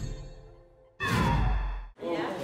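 The tail of an intro logo sting fading out, then a short breathy whoosh about a second in that cuts off abruptly.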